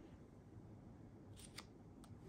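Near silence: room tone, with two faint short ticks about a second and a half in as a sheet of transfer paper is handled on the heat-press pad.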